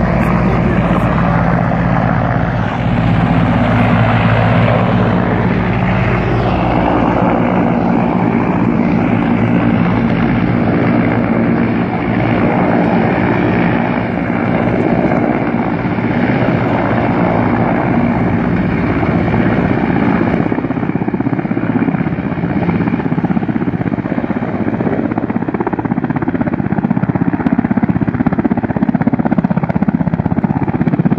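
Military helicopter's rotor and engine running steadily and loud, a continuous rush with a hum of several low steady tones underneath.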